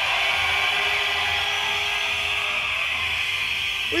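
Live rave recording: a steady, drill-like hissing wash with one held low note under it and no clear beat.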